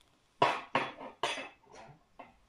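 A person coughing: four short coughs in quick succession.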